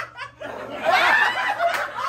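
People laughing, with the laughter swelling about half a second in and loudest around a second in.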